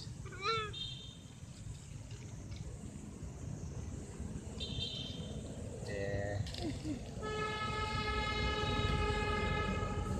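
A vehicle horn sounds one long steady note for the last three seconds or so, over a low outdoor traffic rumble. Short high tones come twice earlier on.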